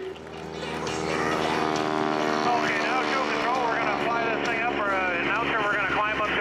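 A biplane's engine and propeller drone steadily, one even pitch with many overtones. A voice comes in over the drone about halfway through.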